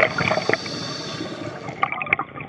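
Water gurgling and bubbling, a dense run of small liquid clicks and pops.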